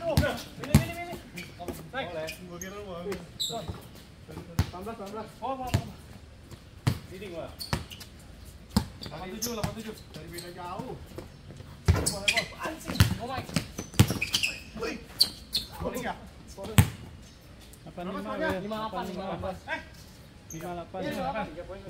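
A basketball bouncing repeatedly on a hard outdoor court during live play: sharp, irregularly spaced bounces as players dribble and pass, with shouting voices between them.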